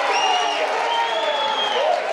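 Studio audience applauding, with a crowd of voices mixed in.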